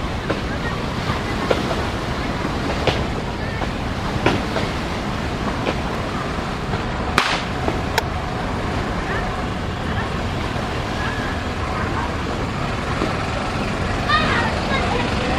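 Steady rushing noise of a large passenger launch under way on a river, its bow wave breaking, with a few sharp clicks.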